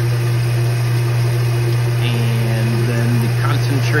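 The pump of a home-built reverse osmosis maple sap concentrator running with a steady low hum, pushing sap through the membrane at about 150 PSI.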